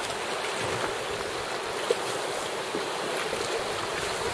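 Steady rush of fast, choppy river water around a canoe heading into rapids, with one light knock about two seconds in.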